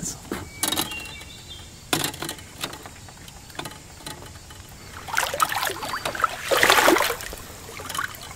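Handling noise from unhooking a freshly caught fish in a canoe: a couple of sharp knocks early, then a louder few seconds of rustling and scuffing toward the end.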